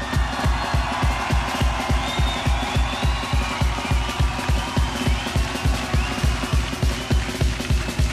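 Heavy metal band playing live: a fast, even kick-drum beat of about four to five thumps a second under a dense wash of band and crowd sound.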